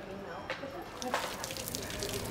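Faint talk, then from about a second in, water from a street fountain splashing and pattering onto paving stones.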